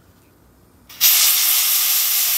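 Compressed air blown hard through an outboard carburetor's fuel passages to clear them: a loud steady hiss starting about a second in.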